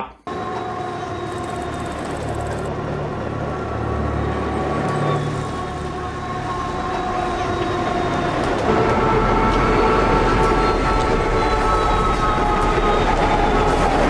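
Film soundtrack of a runaway diesel freight locomotive speeding along, the train noise growing steadily louder. A deeper rumble joins about nine seconds in, with long held tones over it.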